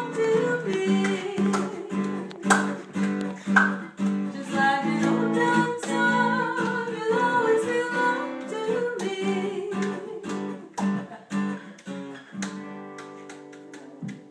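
Acoustic guitar strummed in a slow old-time song, with a voice singing the melody over it. Near the end the playing eases off and the last chord rings out and fades.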